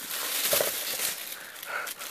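A thin plastic bag crinkling and rustling as hands handle the headphone carry case wrapped in it.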